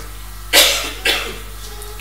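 A man coughing twice close to the microphone: a strong cough about half a second in, then a weaker one a little after a second.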